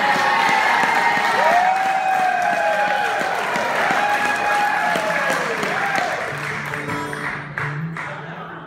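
Concert audience applauding and cheering, with long whoops that rise and fall in pitch. The applause fades in the last couple of seconds as steady acoustic guitar notes come in.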